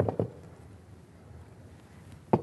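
Two short knocks, a fifth of a second apart, as a white backdrop board is set into its stand on a table, followed by quiet room tone.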